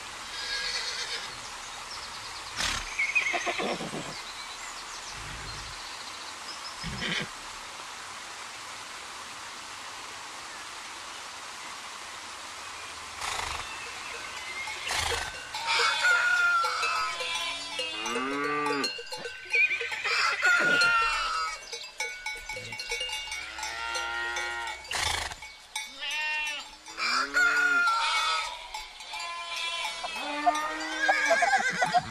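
Farmyard ambience: a steady outdoor hiss with a few short high chirps in the first half. From about halfway, farm animals call over and over in short calls that rise and fall in pitch, with a few sharp knocks among them.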